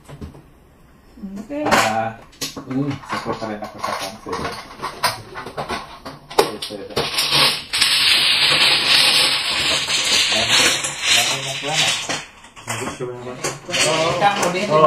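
Plastic mahjong tiles clicking as they are knocked over, then a loud, dense clatter from about halfway as many tiles are swept across the felt into the centre opening of an automatic mahjong table for reshuffling, with voices chatting over it.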